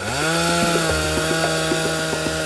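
Chainsaw revving up quickly to full throttle and holding there with a steady, high-pitched engine drone.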